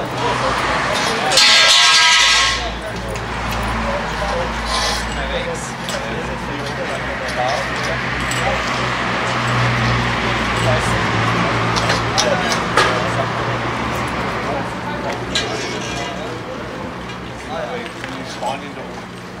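Indistinct outdoor chatter of several people, over a steady low hum, with a few sharp metallic clinks as metal tent-frame poles are handled. A loud rushing noise lasts about a second near the start.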